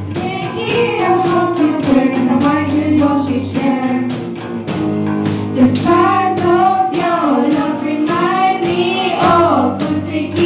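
A group of girls singing together into microphones, backed by a live band: electric guitar and keyboard over a steady drum beat.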